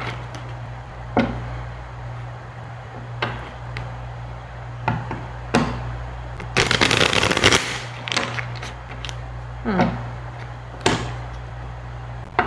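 A deck of tarot cards being shuffled by hand: scattered single snaps and taps of the cards, and about halfway through a dense riffle of the two halves lasting about a second. A steady low hum runs underneath.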